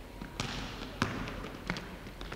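A basketball being dribbled on a hardwood gym floor: three clear bounces about two-thirds of a second apart, with fainter knocks between.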